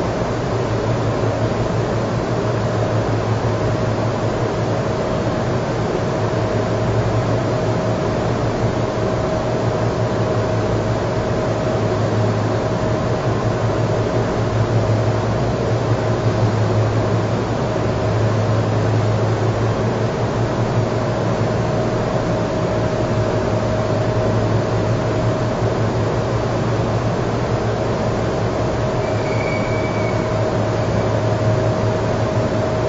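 Steady background hum in a room: a strong low hum under an even rushing noise, with a faint constant higher tone.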